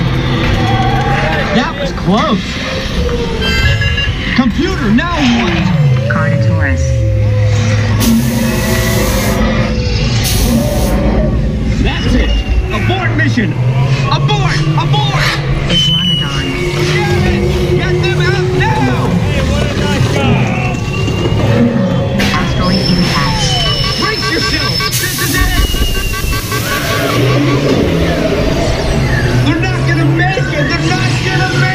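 A loud theme-park dark-ride soundtrack: sound effects, music and voices mixed over the low rumble of the moving ride vehicle. There are several falling sweeps in the first few seconds and short loud hisses about eight to ten seconds in and again around twenty-five seconds.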